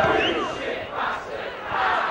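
Football crowd in the stands chanting together. The sustained chant fades during the first second, leaving scattered shouting that swells again near the end.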